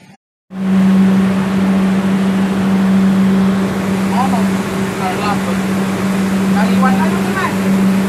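Pump-house machinery running loudly and steadily with a constant low hum, starting just after a brief cut-out at the very beginning.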